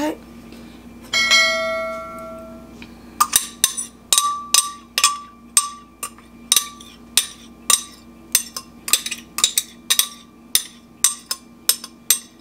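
Glass blender jar knocked repeatedly, about three sharp knocks a second with a short ring to each, to shake thick blended aloe vera gel out into a bowl. A single ringing clink comes about a second in.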